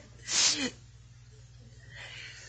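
A short, breathy burst of a person's voice about half a second in, ending on a falling note, then a steady low hum.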